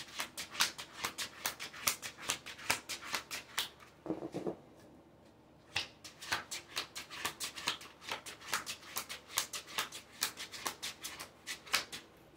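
A deck of tarot cards being shuffled by hand: a quick run of light card slaps, about four or five a second. It breaks off for about a second and a half near the middle, then starts again.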